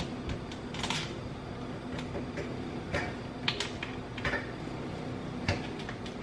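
Large stock pot of beans at a rolling boil: scattered, irregular pops and ticks from the bubbling over a steady low hum.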